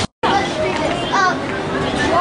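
Voices of people and children talking and calling out in a busy public area. There is a split-second dropout to silence at the very start.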